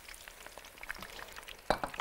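Faint, steady crackling sizzle of food frying in hot oil, with one brief louder sound near the end.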